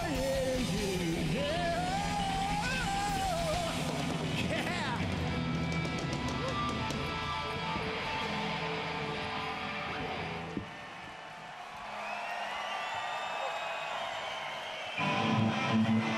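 Heavy metal band playing live, loud. A sung wail rides over distorted electric guitars for the first few seconds, then the band holds the closing chords until they cut off about ten and a half seconds in. A quieter stretch of crowd noise follows, and an electric guitar starts strumming loudly near the end.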